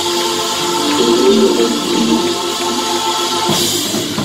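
Gospel choir singing with organ and band accompaniment, the music stopping with a brief crash near the end.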